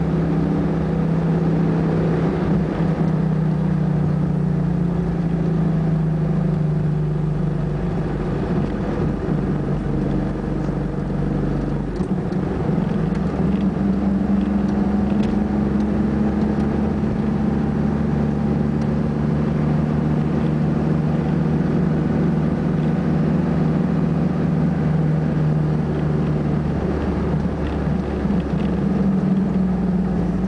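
Car engine running and tyre noise, heard from inside the cabin while driving. There is a steady low drone that drifts in pitch, breaks off about twelve seconds in, then comes back a little higher.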